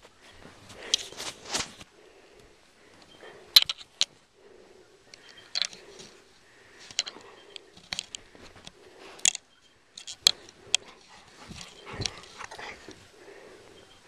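A dog nosing and mouthing at the camera up close: irregular sharp clicks and scuffs, with fur rubbing against the microphone.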